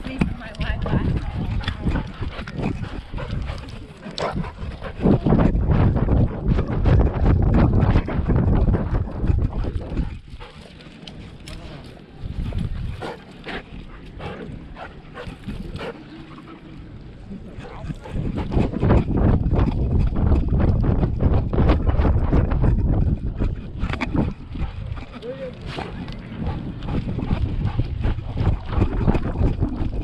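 Handling and wind rumble from an action camera strapped to a moving dog, with fur and harness rubbing over the microphone and the dog's footfalls. It is louder from about 5 to 10 s and again from about 18 s on, and quieter in between.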